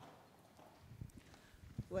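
Faint footsteps of a person walking across the hall: a few soft, low knocks in the second half. Someone begins to speak right at the end.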